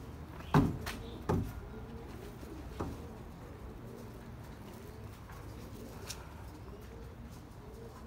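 Domestic pigeons cooing, a low coo repeated over and over, with two loud thumps about half a second and a second and a half in and a lighter knock near three seconds.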